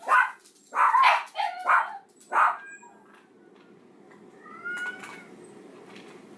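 A household pet calling: several short, loud calls in the first two and a half seconds, then fainter drawn-out calls that rise in pitch about five seconds in.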